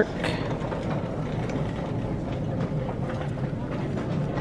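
Steady background noise of a retail store, an even hum and murmur, with a few faint ticks.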